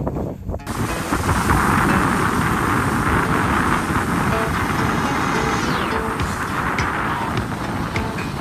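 Skis sliding and scraping over snow with wind rushing across the microphone, cutting in suddenly under a second in, over quiet background music.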